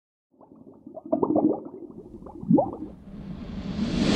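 Logo-animation intro sound effect: a quick run of short blips, a rising swoop about two and a half seconds in, then a whoosh that swells toward the end.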